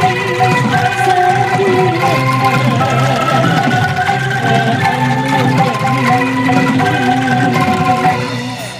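A bamboo angklung ensemble with gambang bamboo xylophones and a band (bass, drums) playing a Sundanese pop song: held, shimmering chords under a wavering melody line that runs without a break.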